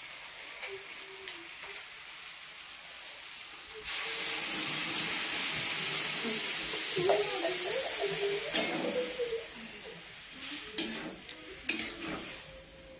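Chopped green vegetables frying in a steel pan on a gas stove: a loud, steady sizzle sets in suddenly about four seconds in while a spatula stirs them, with a couple of sharp knocks of the spatula against the pan near the end.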